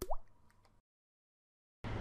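A short cartoon 'bloop' sound effect for the animated logo: one quick upward pitch glide lasting about a quarter second, with a faint tick after it. A woman's voice begins just before the end.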